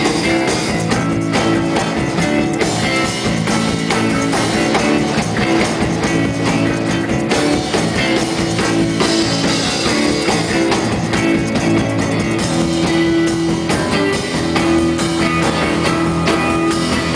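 Live rock band playing an instrumental passage: strummed acoustic guitar over a drum kit, with steady held notes underneath.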